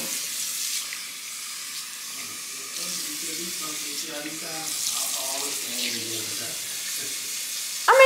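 A tap running steadily into a sink, a continuous even hiss of water.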